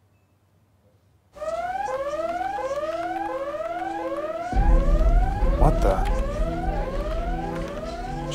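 About a second of dead silence where no laugh comes, then a control-room warning alarm starts: repeated rising electronic whoops, about three every two seconds. A deep low rumble joins about halfway through.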